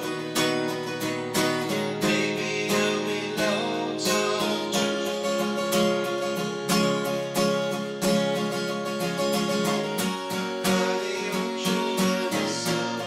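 Steel-string acoustic guitar strummed in a steady rhythm, with a man singing along.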